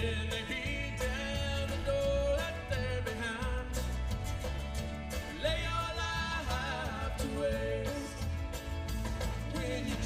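Live country band playing: drums and bass under strummed guitars and banjo, with a lead melody that bends and wavers in pitch over the top.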